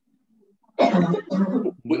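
A man clears his throat in two short bursts, then starts to speak, heard over a video call.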